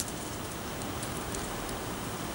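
Steady background hiss, with faint rustles of a paper raffle ticket being folded and dropped into a hat.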